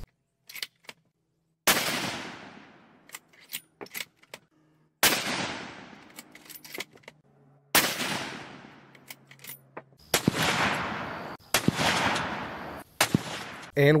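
A string of .243 Winchester rifle shots from a Winchester Model 70 Featherweight Compact with a 20-inch barrel, a few seconds apart. Each report trails off in a long fading echo, with light clicks between the shots.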